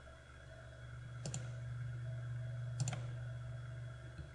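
Two computer mouse clicks, each a quick press-and-release, about a second and a quarter in and again just before three seconds, over a steady low hum.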